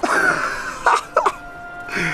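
A man coughing: one rough burst at the start and two short ones about a second in, over soft background music that holds a steady note.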